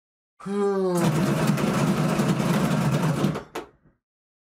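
A pair of dice being rolled in a round dice bowl. A brief falling tone about half a second in is followed by a dense rattle of about two seconds, and a single click as the dice come to rest.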